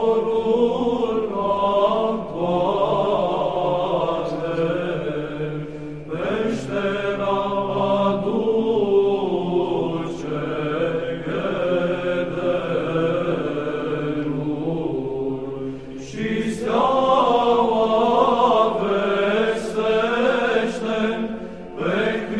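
Orthodox Byzantine chant: a sung melodic line over a steady held drone, with new phrases beginning about six and sixteen seconds in.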